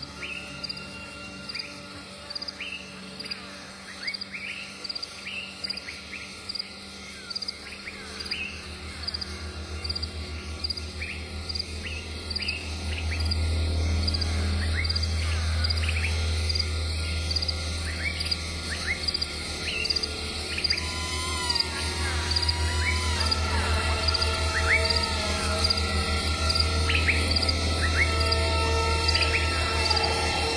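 Insects chirping and birds calling over slow instrumental music, with a steady high ticking. A low hum swells up about eight seconds in and grows stronger toward the end.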